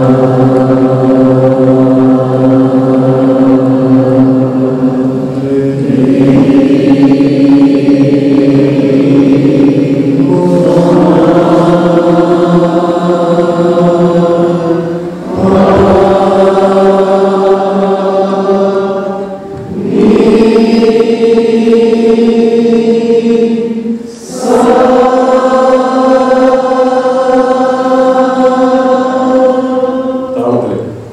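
A man's voice chanting into a microphone in a series of long held notes, each about four to six seconds. The pitch steps from one note to the next, with a short breath between them.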